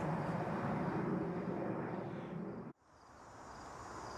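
Steady outdoor background noise with a low hum, fading slightly, then cutting out to complete silence for a moment about two-thirds through before slowly returning.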